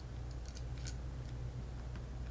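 Faint small clicks and taps of an aluminum paintball trigger being slid back into the frame of a Luxe TM40 marker by hand, scattered over a low steady hum.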